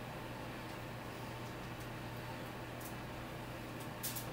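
Room tone: a steady low hum under faint hiss, with a faint click near three seconds in.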